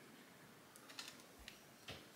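A few faint clicks of a handheld microneedling stamp being pressed against the skin of the face, about four in the second half, the last the loudest.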